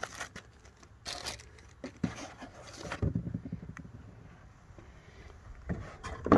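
Molded pulp packaging tray and a plastic bag being handled in a monitor box: scraping and crinkling in a few short bursts over the first three seconds, quieter after, with a sharper knock just before the end as the tray comes off.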